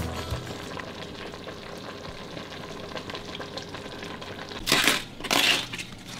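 Fresh collard green leaves being torn from their stems and crumpled by hand: two crackling tears near the end, after a stretch of quiet room noise.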